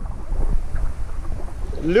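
Pool water sloshing and splashing as two huskies paddle, with a low wind rumble on the microphone.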